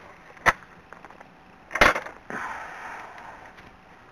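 A field gate being worked from horseback: two sharp knocks of the gate or its latch, about half a second and just under two seconds in, the second louder, then a longer scraping rustle as the gate swings.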